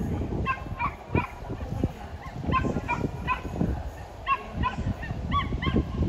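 A bird calling over and over: short pitched calls in loose groups of three or four, over a low rumble.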